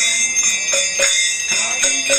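Brass karatalas (hand cymbals) struck in a steady rhythm of about three strokes a second, their ringing sustained between strokes, with strokes on a mridanga drum.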